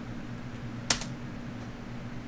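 A single computer-keyboard keystroke about a second in, the Enter key sending the firmware-flash command, over a steady low hum.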